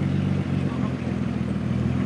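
Nissan Skyline R34 Tommy Kaira's straight-six engine idling steadily.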